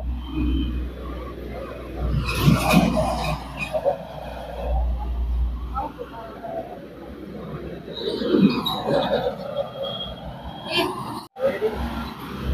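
Indistinct, mumbled voices in short, irregular stretches, over a steady low rumble that fades about halfway through.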